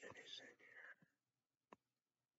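A man's voice speaking very quietly, close to a whisper, trailing off about a second in; then near silence with one faint click near the end.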